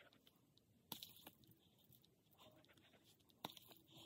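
Near silence: quiet room tone with a few faint, short clicks, one about a second in and another near the end.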